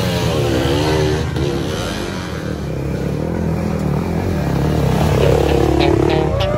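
Off-road dirt bike engines revving and rising and falling in pitch as the bikes ride through a shallow river, throwing up water.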